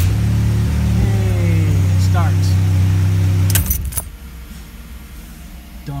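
The Chevy Captiva's V6 turning over on the starter for about three and a half seconds, then stopping suddenly. The car now cranks, after failing to crank with a bad HVAC control head. A short jangle of keys in the ignition follows as the key is let go.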